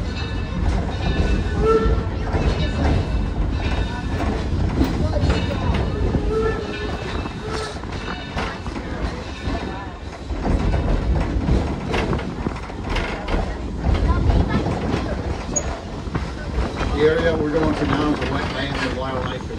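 Open-sided railroad passenger coach rolling along the track: a steady rumble of wheels and car body, with clacking over the rail joints and a brief squeal near the end.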